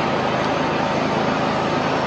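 Steady background room noise, an even rushing hiss that does not change.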